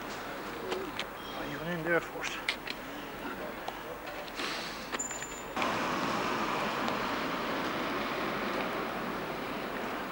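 Street ambience with brief, indistinct voices and a few clicks in the first half, then an abrupt change about halfway to a steadier, louder background noise.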